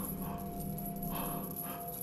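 Dark horror-trailer sound design: a steady low drone with a thin high tone held above it, with several short noisy bursts over it.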